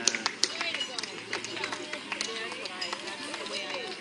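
Indistinct voices of people talking and calling out, mixed with scattered sharp clicks.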